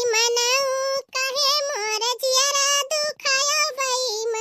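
A high, pitched-up cartoon voice singing in long, steady held notes, with short breaks about a second in and about three seconds in.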